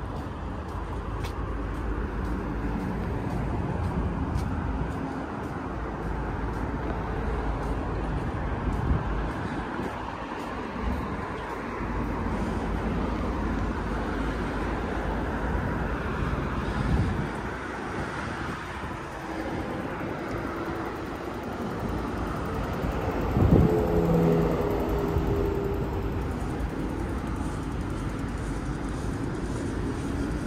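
Steady road traffic on the bridge's roadway, a continuous rush of tyres and engines. About two-thirds of the way through, a louder vehicle passes with a steady engine hum.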